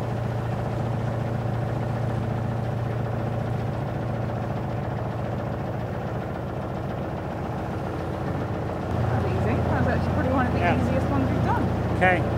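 A narrowboat's engine running steadily with a low hum, getting louder about three-quarters of the way in as it is given more throttle; voices talk over it near the end.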